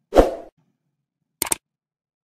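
A short, loud pop with a swish just after the start, fading within half a second, then a quick double click of a computer mouse about a second and a half in.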